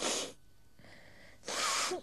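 A woman crying into a handkerchief: two loud, breathy sobs, a short one at the start and a longer one about a second and a half in, the second ending with a slight catch of voice.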